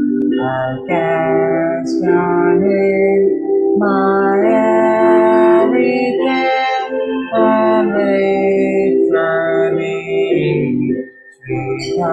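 A hymn sung by a voice in phrases over sustained electronic-organ or keyboard chords, heard through a Zoom call's audio, with a brief break between phrases near the end.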